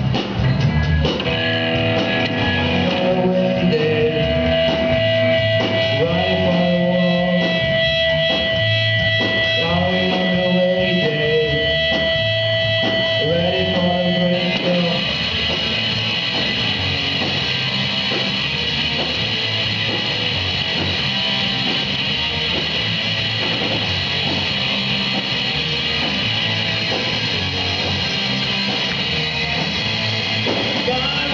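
Live rock band playing: electric guitar, bass guitar and drum kit, heard from among the audience. A long held note rings over a repeating guitar figure for about the first half, then it stops and the playing turns denser and more even.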